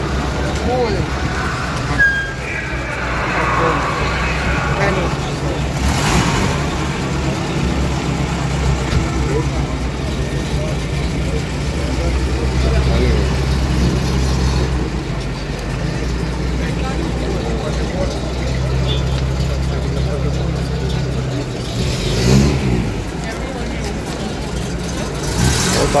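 GAZ-21 Volga's four-cylinder engine running steadily at low revs as the car manoeuvres at walking pace.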